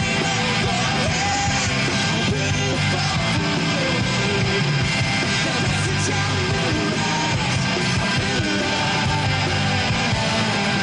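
Rock band playing live: electric guitar and drums with a male lead singer singing into the microphone, loud and steady throughout.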